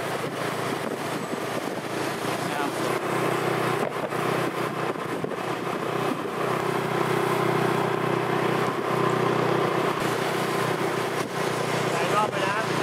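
A motor vehicle's engine runs with a steady hum at constant speed, with rushing road and wind noise.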